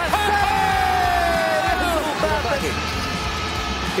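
A commentator's long excited yell, held for about a second and a half and slowly falling in pitch, over arena crowd noise and background music.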